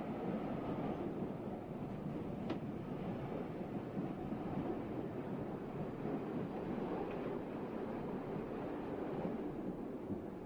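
Electric multiple unit train running slowly alongside the platform as it draws into the station: the steady noise of steel wheels on rail, with one faint click about two and a half seconds in.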